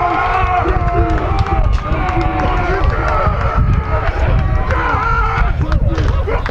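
Several people shouting and cheering at a goal in an outdoor football match, their voices overlapping, over a heavy rumble of wind on the microphone.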